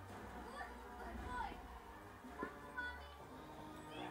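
Music and voices from a television soundtrack playing in the room, with a few short high squeaks and a brief knock about halfway through.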